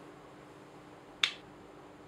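A single short, sharp click a little past a second in, over a faint steady background hiss.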